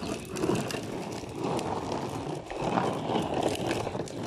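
Hard plastic wheels of a toddler's ride-on trike rolling over asphalt: a steady rough rumble with a patter of small rattles.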